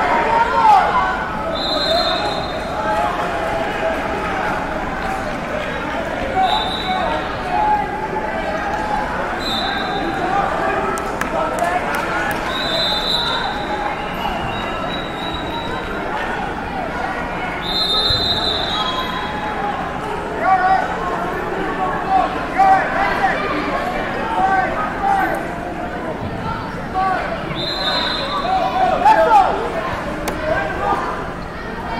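Indistinct shouting and chatter of coaches and spectators echoing in a large gym. Short high squeaks come a handful of times.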